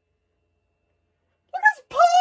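Dead silence, then near the end a short, high-pitched voice sound that rises and falls in pitch.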